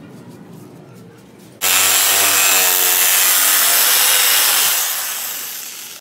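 Electric jigsaw cutting plywood. It starts abruptly about a second and a half in, runs loud and steady, and fades out near the end.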